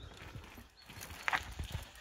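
Mountain bike rolling down a rocky dirt trail: a run of irregular knocks and clatter as the tyres drop over rocks and roots, growing louder as the bike comes close.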